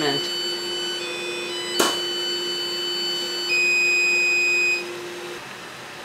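XcelVap evaporator's end-of-run alarm buzzer sounding steady electronic tones, signalling that the sample evaporation is finished. The loudest, a high steady beep, comes about three and a half seconds in and lasts just over a second. There is a short click about two seconds in.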